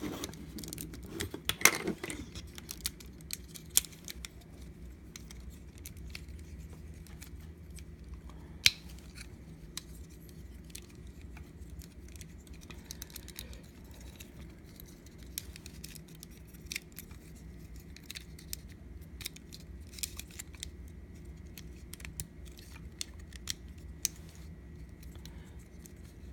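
Plastic action figure being handled and posed by hand: scattered sharp clicks of its joints and light knocks against a wooden tabletop, densest in the first two seconds. A low steady hum lies underneath.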